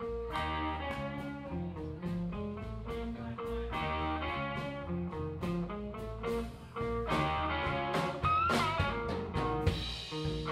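Live blues-rock band playing an instrumental passage: electric guitars over bass guitar and a drum kit. A lead note slides and wavers about eight seconds in.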